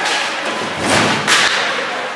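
A heavy thud of an impact against the ice rink's boards about a second in, followed straight away by a short, sharp scrape-like hit, over the arena's background noise.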